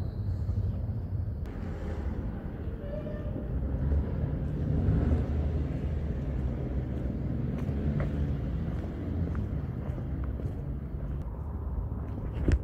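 City street ambience: a steady low rumble with a few faint clicks.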